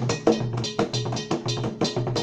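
West African percussion music accompanying a dance: a struck bell and drums in a quick, even rhythm of about four strokes a second.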